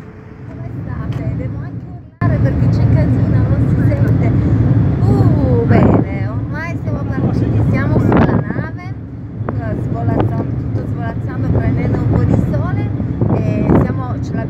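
Engine hum inside a car cabin for the first two seconds. It breaks off abruptly into a loud, steady low rumble on the open deck of a moving ferry, with a woman talking over it.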